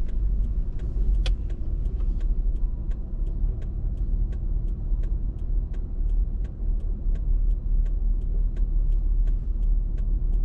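Low rumble of a car heard from inside the cabin, rolling slowly and then idling in city traffic, with a steady ticking of about three clicks a second and one sharper click just over a second in.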